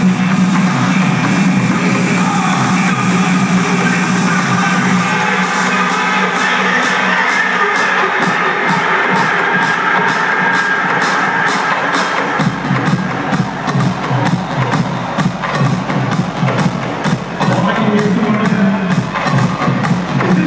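Loud electronic dance music over a festival sound system, with a crowd cheering. A fast steady beat builds with the deep bass held back, and the heavy bass comes back in about twelve seconds in.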